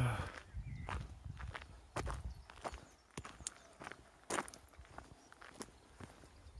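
Footsteps tramping through long grass and undergrowth, with irregular crackles and snaps of stems and twigs underfoot. A short hummed voice sound comes at the very start.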